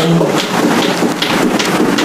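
A man's held sung note breaks off just after the start, and hand clapping follows: a dense, steady patter of claps.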